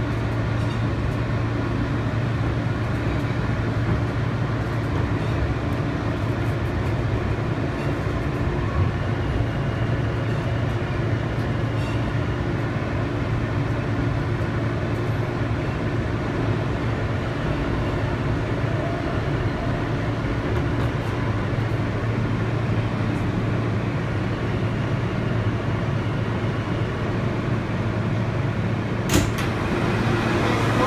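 Subway car interior running noise with a steady low hum as the train pulls into a station, then one sharp clunk near the end as the side doors open.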